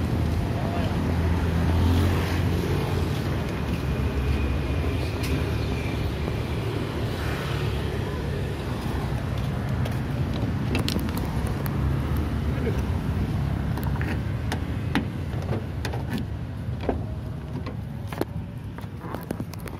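Street traffic noise, a steady low rumble of vehicles on the road. It grows slightly quieter toward the end, where a few sharp clicks and knocks come as a car door is opened.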